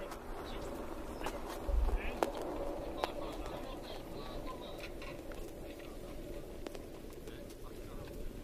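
Faint, indistinct voices of a group of mountain bikers talking, with scattered light clicks and a low thump about two seconds in.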